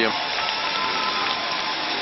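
Large arena audience applauding steadily, a dense, even wash of clapping.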